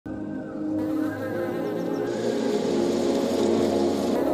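Honeybees buzzing over steady background music.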